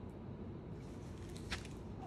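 Quiet handling noise as a blue gel ice pack is lifted off a knee: faint rustling of the pack and bedding over a low room hum, with one soft click about one and a half seconds in.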